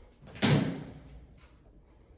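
A screwdriver set down on the sheet-metal top of a stainless-steel oven casing: one sharp knock about half a second in that rings briefly and dies away.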